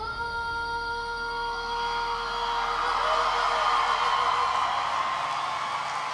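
A young girl's voice holds the final long note of the song, which fades out about three seconds in. Under it a large audience's cheering and applause rises and carries on.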